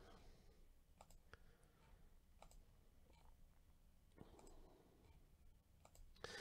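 Near silence with a few faint, scattered clicks of a computer mouse button.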